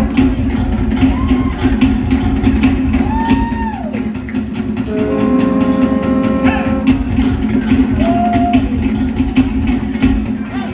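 Conch shell trumpets blown in long held notes, one held for nearly two seconds about halfway through, and shorter notes that swell and fall away in pitch. Show music with a steady drumbeat plays under them.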